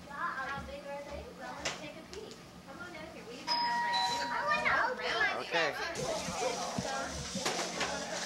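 Young children's voices chattering and calling out in a room, with a steady electronic tone sounding for about a second roughly halfway through.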